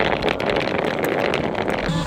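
Canopy bag dragged along a paved road: a steady, grainy scraping of fabric over the asphalt.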